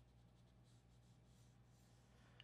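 Very faint scratching of a pencil drawing short strokes on paper, over a steady low hum.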